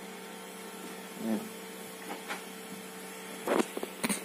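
Small 12 V DC cooling fans running with a steady, even hum while the freshly powered board boots.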